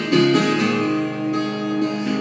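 Steel-string acoustic guitar strummed, a chord struck near the start and left ringing.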